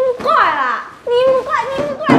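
A woman's voice speaking in a high, coy, sing-song tone with drawn-out syllables, in two phrases with a brief pause about halfway.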